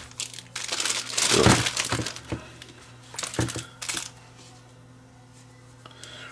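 A thin clear plastic bag crinkles and rustles as a handheld digital multimeter is pulled out of it, with a sharper knock about one and a half seconds in. The handling stops about four seconds in.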